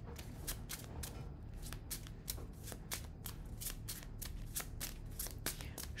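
A deck of tarot cards being shuffled by hand: a quick, irregular run of light card clicks and flicks, about four or five a second.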